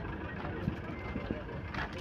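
Steady low rumble of vehicles in the background, with faint voices.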